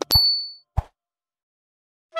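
Cartoon sound effect for a subscribe button being clicked: a sharp click and a bright, high ding that rings out for about half a second, then a short knock just under a second in.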